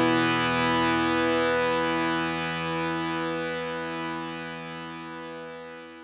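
The song's final chord, held with no new strums and fading steadily as the track ends.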